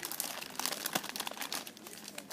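Clear plastic bags holding squishy toys crinkling as they are handled, in quick irregular crackles.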